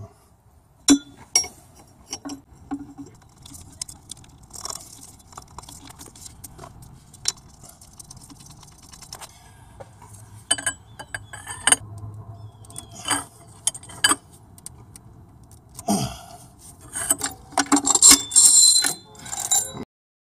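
Metal hand tools and engine parts being handled: scattered sharp clicks and clinks, with a denser, louder run of clinking near the end.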